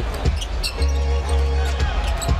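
Basketball being dribbled on a hardwood court, with arena music in the background holding a steady note for about a second in the middle.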